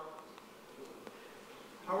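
Faint room tone in a pause, then a voice, quieter than the lecturer's, begins a question near the end.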